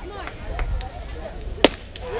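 A fastpitch softball bat strikes a pitched ball once near the end, a single sharp crack, over faint voices and cheers from players and spectators.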